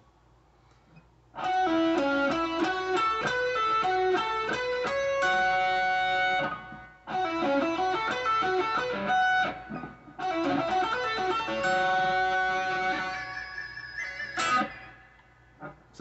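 Electric guitar playing a fast lead run of rapid single notes in three phrases with short breaks between them. The run ends on a held note with vibrato and a brief high rising squeal.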